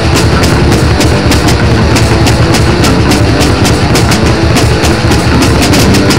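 Heavy metal band playing an instrumental passage: electric bass and distorted instruments over fast, evenly spaced drum and cymbal hits, loud and without vocals.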